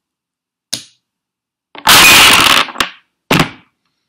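A Jenga tower of wooden blocks collapsing onto a wooden tabletop: one sharp wooden click, then about a second in a loud clatter of blocks that lasts most of a second, followed by a click and a smaller clatter as the last blocks fall.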